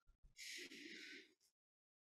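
Near silence, broken about half a second in by one faint, brief intake of breath lasting under a second.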